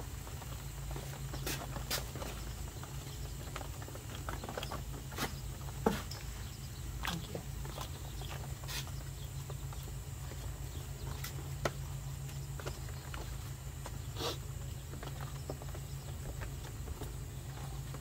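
Wet feathers being pulled by hand from a scalded chicken carcass: scattered small ticks and crackles over a steady low hum.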